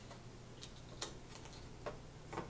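Three faint, light clicks and taps as a plastic sheet is handled and fitted into a small metal picture frame with glass, the one about halfway through the loudest, over a faint steady low hum.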